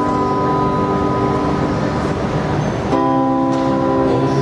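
Acoustic guitar playing an intro: strummed chords left ringing, with a new chord struck about three seconds in.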